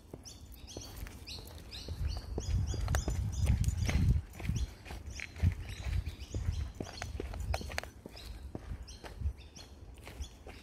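Footsteps and dogs' paws going down timber-edged steps on a dirt bush track, with irregular light knocks and a low rumble. Short high bird chirps repeat through the first half.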